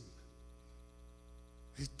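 Steady, low electrical mains hum, with a man's voice starting a word near the end.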